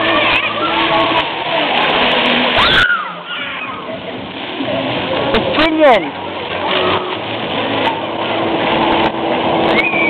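Plaza fountain jets hissing and splashing onto wet paving, with children's voices and shouts over the water. There is a dip in the rush about three seconds in, and a long falling squeal near six seconds.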